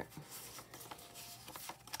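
Tarot cards being shuffled by hand, a faint sliding rustle of card on card with scattered soft ticks.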